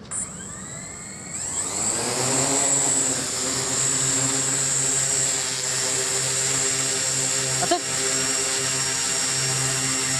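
The electric motors and propellers of a large eight-rotor octacopter (OFM GQuad-8) spin up with a rising whine. About a second and a half in they grow louder as it lifts off, then settle into a steady hover hum with a high-pitched whine.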